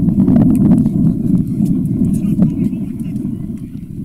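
Open-air sound of a football match on a camera microphone: a steady low rumble, with players' faint shouts about halfway through. It gradually fades toward the end.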